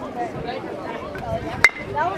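A metal baseball bat striking a pitched ball: one sharp ping with a brief ringing tone after it, about one and a half seconds in.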